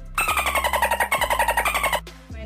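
Loud electronic sound effect: a rapidly pulsing, buzzing tone that slides slowly down in pitch and cuts off abruptly, laid over background music.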